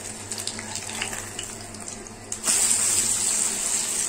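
Ghee sizzling under a wheat-flour banana pancake in a frying pan. About two and a half seconds in, the sizzle turns suddenly louder as the pancake is flipped and its raw side lands in the hot ghee.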